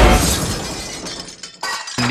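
The beat cuts off with a sudden crash, like a shattering sound effect, that fades over about a second and a half. A second short burst comes near the end.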